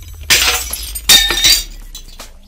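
Glass-shattering sound effect in a logo intro: two crashing bursts with a glassy ring, over a low steady bass drone.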